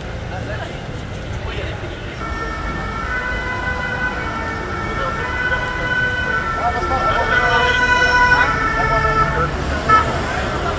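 Police vehicle siren sounding from about two seconds in and growing louder toward the end, over low street rumble.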